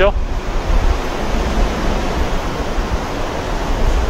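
Steady, deep rushing noise of wind on the microphone, over city street traffic.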